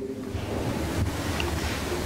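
Steady rushing noise with a low rumble underneath, heard in a pause between spoken sentences.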